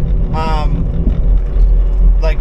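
Skid-steer loader's engine running steadily at idle, a low rumble heard from inside the cab. A brief bit of a man's voice about half a second in.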